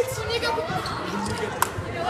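A group of boys shouting and chattering, with a single sharp knock about a second and a half in.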